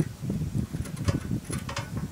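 Small handling and scraping sounds of a steel rule and scriber worked against a steel sleeve to scribe a locating mark, with two brief scratches about a second in and near the end, over a low uneven rumble.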